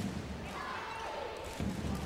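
Indoor handball arena ambience: a steady murmur of crowd voices filling the hall, with a handball bouncing on the court floor.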